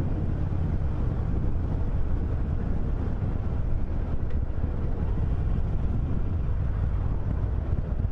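Harley-Davidson Iron 883's air-cooled V-twin engine running steadily while the bike is ridden, mixed with wind buffeting the microphone.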